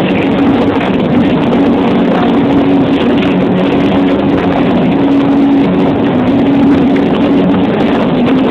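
Loud live music from a rap performance on a club sound system, picked up by a phone microphone. A low, droning tone holds steadily at one pitch under a dense wash of sound.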